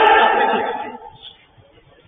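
A man's long shout across the pitch, rising in pitch, held and then fading out about a second in.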